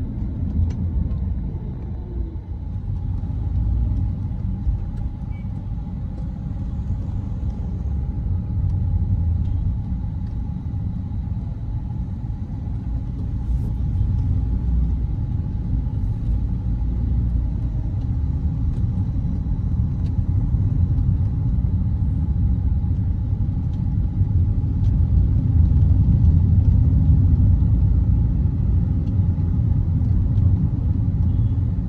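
Steady low rumble of a car on the move, heard from inside the cabin: engine and tyre noise, a little louder near the end.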